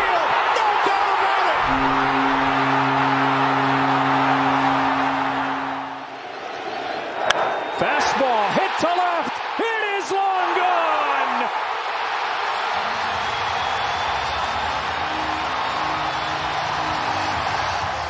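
A packed ballpark crowd roaring for a home run, with a sharp crack about seven seconds in and a broadcaster's excited call over the noise. Steady sustained tones sound under the crowd early on and again near the end.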